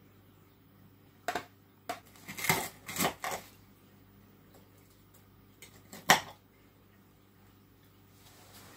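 Metal knife and fork clinking and scraping against a plate while cutting food, a scattered series of short clicks and knocks, the sharpest about six seconds in.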